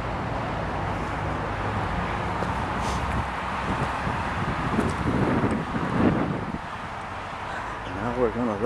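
Road traffic running steadily, with wind rumbling on the microphone and a louder gusty stretch about five to six seconds in.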